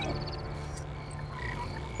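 A few faint, short electronic chirps from the alien Echo, its beeped reply to a question, over a low steady hum.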